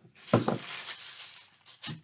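Craft materials handled on a tabletop covered in plastic sheeting: a sharp knock about a third of a second in, plastic rustling, and another knock near the end as a box of matches is set down.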